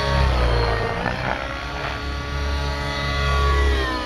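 Radio-controlled model helicopter's motor and rotor whining with a steady set of tones that sag and drift a little in pitch as it manoeuvres, over a pulsing low rumble.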